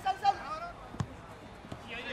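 A football kicked once, a single sharp thud about a second in, with players' faint calls on the pitch.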